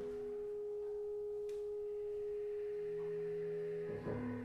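A single pure, sustained tone held at one steady pitch, from a chamber ensemble playing contemporary concert music; a quieter, lower note joins it briefly about three seconds in.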